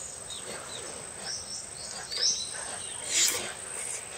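Small birds chirping with short high calls, over a steady high insect buzz. About two and three seconds in come two short, louder noises of eating with a spoon.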